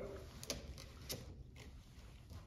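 Faint handling sounds of a push-fit PVC repair coupling being slid along a PVC pipe, with two small plastic clicks about half a second apart.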